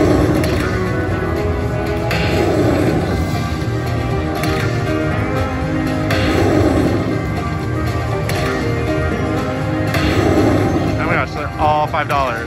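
Buffalo Link slot machine playing its bonus-feature music and sound effects. The sound swells about every two seconds as each free spin plays out, with a quick run of rising and falling tones near the end.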